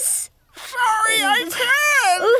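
A high-pitched cartoon character's voice making wordless whimpering cries. A short breathy noise at the start and a brief pause come before the cries.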